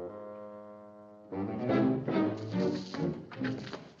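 Orchestral cartoon underscore. A held chord for a little over a second, then a short, busier passage with brass and strings.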